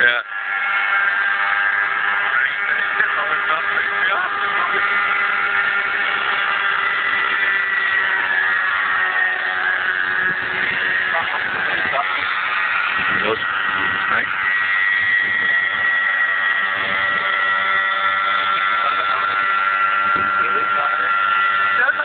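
Radio-controlled scale Bell 222 helicopter in flight, its motor and rotor giving a continuous whine whose pitch drifts up and down slightly as it flies.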